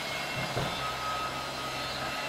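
Steady low hum over a hiss of background noise, with a faint high-pitched whine coming in about half a second in.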